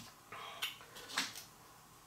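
Faint, brief handling noises of small parts on a workbench as a toothpick is picked up beside a rubber O-ring, a few soft taps and rustles in a quiet room.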